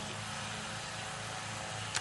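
Steady low hum under an even hiss of background noise, with no speech.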